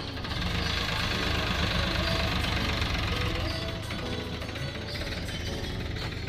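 Farmtrac 45 tractor's diesel engine running steadily, with music playing alongside.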